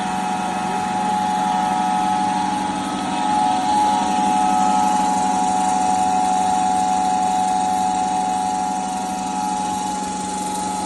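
Small floating fish feed pellet extruder running while it makes pellets: its electric motor gives a steady hum with a higher whine, swelling slightly a few seconds in.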